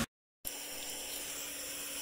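After a brief moment of dead silence, a steady hiss, typical of a lit butane soldering iron burning.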